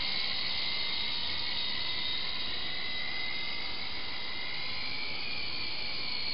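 Syma S301G radio-controlled helicopter's electric motors and rotors in flight, a steady high whine that drifts slightly up and down in pitch.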